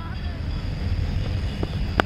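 Wind buffeting the microphone in a steady low rumble, ending in a single sharp crack of a cricket bat hitting the ball.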